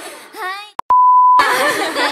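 A single steady electronic beep, about half a second long, with all other sound cut out beneath it, as in a censor bleep laid in by an editor. It is the loudest sound here. It follows a woman's voice rising in pitch, and voices and hall sound return right after it.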